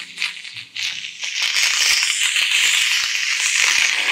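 Aerosol foam can sprayed right at the ear: a few choppy rattling bursts at first, then a loud steady hiss of foam for about three seconds.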